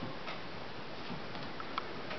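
African grey parrot's beak biting and picking at a small pumpkin's rind: a few soft, irregular clicks over a steady background hiss.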